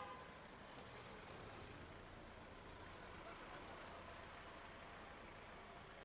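Faint, steady street ambience: a low hum of distant traffic, with no distinct events.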